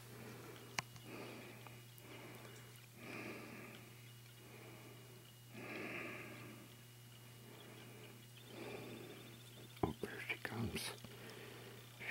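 Faint breathing of a person close to the microphone: soft breaths about every two to three seconds over a steady low hum, with a few sharp clicks near the end.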